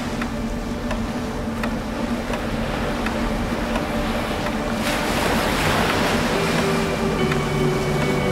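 Ocean surf washing steadily, swelling a little about five seconds in, with soft held musical tones underneath that shift to new notes near the end.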